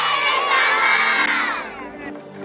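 A crowd of schoolchildren shouting and cheering together, the massed high voices fading away near the end.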